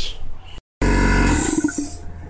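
Small portable electric air compressor running, with a loud hiss of air, as pressure is built up. It starts abruptly about a second in and eases off near the end.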